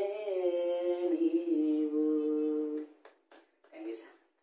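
A man singing a Telugu song unaccompanied, holding a long drawn-out note that wavers at first and then holds steady, ending about three seconds in.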